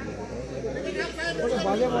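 Only speech: people talking over one another, with no other distinct sound.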